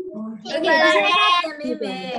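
A young child's high, drawn-out voice, its pitch wavering for about a second, with an adult saying "okay, okay" around it.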